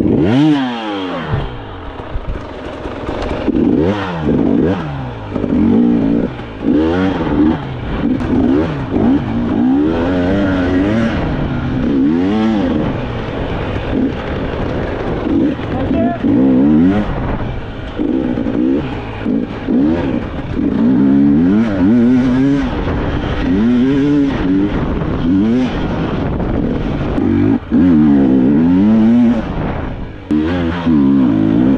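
Dirt bike engine revving up and down over and over as it is ridden along a rough trail, the pitch climbing and dropping every second or two as the throttle is worked.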